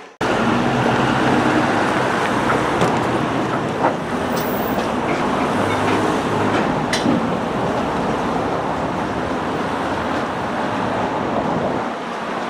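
Steady road traffic noise of cars and vans driving past on a city street.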